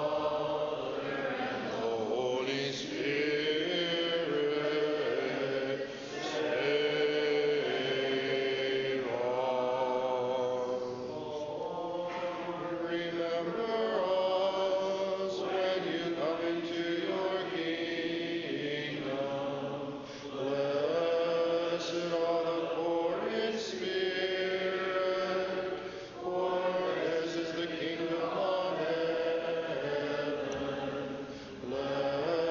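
Several voices singing Orthodox liturgical chant a cappella in harmony, in long held phrases with short pauses between them.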